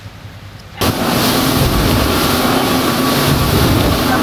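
Faint room tone, then about a second in a sudden cut to a passenger speedboat under way: its engine running steadily under a loud rush of wind and water.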